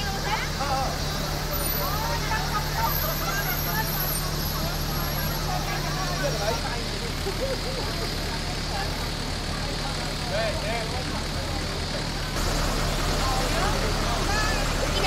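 Crowd chatter, many people talking at once, over the steady low hum of an idling bus engine.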